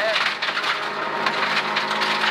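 Rally car at speed on a gravel road, heard from inside the cabin: loose gravel crackling against the underbody and wheel arches over a steady engine note and tyre noise.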